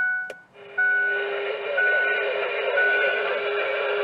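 A Cobra 19 DX IV CB radio switching on with a click and then putting out steady static hiss from its speaker, a sign that it is getting power. A truck's dashboard warning chime beeps about once a second throughout.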